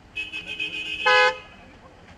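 Car horns honking: a wavering high tone for about a second, then a short, loud honk just after a second in.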